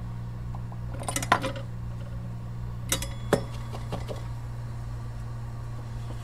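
A few light metal clicks and clinks of small hand tools handled on a phone-repair bench: a cluster about a second in and two sharp clicks around three seconds, over a steady low electrical hum.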